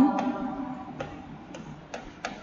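A stylus tapping on a writing surface during handwriting: a few light clicks at uneven intervals.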